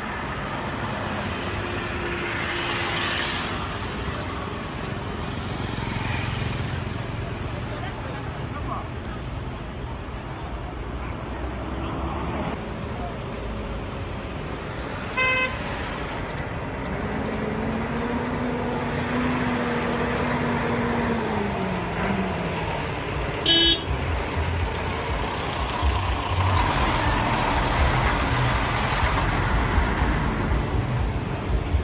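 Roadside traffic: cars, trucks and motorcycles passing, with two short horn beeps about halfway through and again some eight seconds later. A passing vehicle's engine hum holds one pitch for a few seconds and then falls away.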